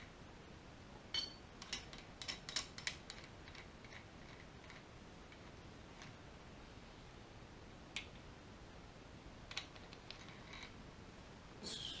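Light metallic clicks and clinks of a nut, washers and wrench being handled on a threaded harmonic balancer installer tool. The clicks come in a cluster over the first few seconds, then singly about eight seconds in and a few more around ten seconds, over quiet room tone.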